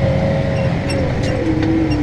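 Case Maxxum 125 tractor engine running steadily under load while pulling a stubble cultivator, heard inside the cab. A whine over the low rumble drops in pitch about one and a half seconds in.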